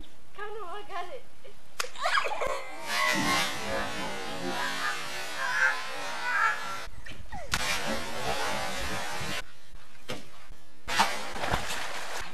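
Water splashing in an inflatable garden pool, in several stretches that start and stop abruptly, after a boy's voice briefly at the start.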